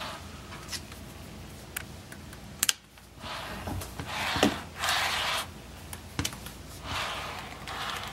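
HO scale model locomotive handled and rolled along the track by hand: a few sharp plastic clicks and several short rustling rolling noises, each under a second long.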